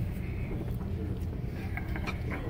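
Restaurant room noise: a steady low hum with faint, distant voices and a few light clicks.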